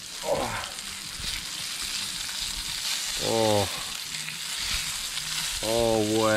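Flour-dusted coral trout fillets and fish skins sizzling steadily as they shallow-fry in hot vegetable oil in a pan.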